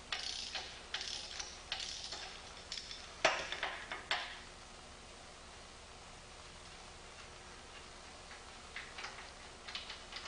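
Socket wrench ratcheting and clicking as bolts are loosened from a steel top plate, a run of sharp clicks and rasps over the first four seconds with the loudest near the end of that run. After that, only faint room tone and a few light clicks.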